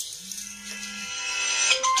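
A mobile phone ringtone starting to play, a melodic tune that grows louder toward the end. A low steady tone sounds for about a second near the start.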